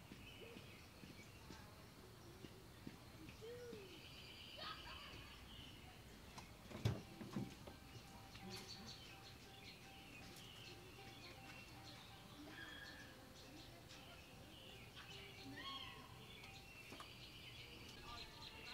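Faint outdoor ambience of distant children's voices and chirping birds, with one sharp click about seven seconds in.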